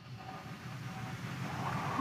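Steady low background hiss, room tone with no distinct event in it.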